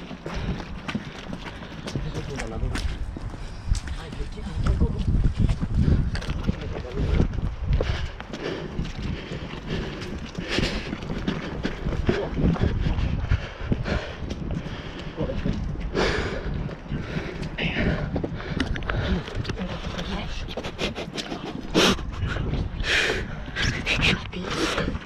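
Wind and handling noise on a handheld camera's microphone, with a jacket rubbing against it, under indistinct voices. Scattered short knocks and scuffs run through it, with sharper hissy bursts about sixteen seconds in and again near the end.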